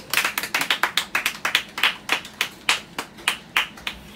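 A few people clapping: separate, uneven hand claps rather than a dense applause, welcoming a performer onto the stage.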